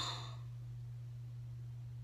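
A girl's breathy sigh trailing off in the first half second, then quiet room tone with a steady low hum.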